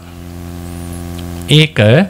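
Steady electrical mains hum in the microphone and sound system, heard plainly in a pause. A man's voice speaks a short word about one and a half seconds in.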